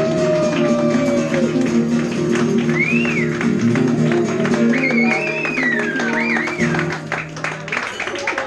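Acoustic and electric guitar playing strummed chords together in a Latin, flamenco-like style, with a few high sliding notes above them. The chords stop about seven seconds in.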